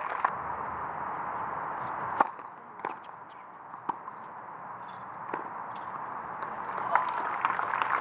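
Steady crowd noise from spectators, then a sharp cut into a rally: a tennis ball struck by rackets several times, roughly a second or so apart. Crowd noise rises again near the end.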